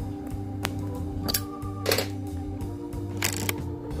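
Background music with a steady tune, over which come a few short clicks and breathy puffs as a tobacco pipe is lit with a small lighter.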